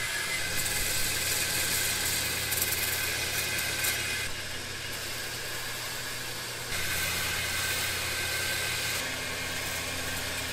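Belt grinder running with a steady motor hum while a steel roller chain is pressed against its abrasive belt, the steel grinding with a dense hiss. The grinding noise shifts in level about four seconds in and again near seven seconds.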